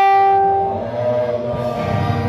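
Loud held note from an electronic keyboard, one clear pitch with bright overtones. It begins abruptly and fades about a second in, and gospel singing with accompaniment comes back in.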